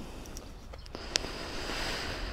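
Faint, steady low background rumble, with one short click about a second in.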